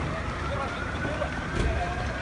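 Outdoor sound at a building fire: indistinct voices of onlookers over a low rumble, with a distant siren wailing, its pitch slowly rising and then falling.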